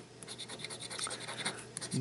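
A scratch-off lottery ticket being scraped with the edge of a flat metal card tool: a quick run of short, quiet scraping strokes rubbing off the ticket's coating.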